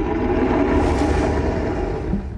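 A loud rushing whoosh with a deep rumble underneath: an underwater sound effect that swells and then fades near the end.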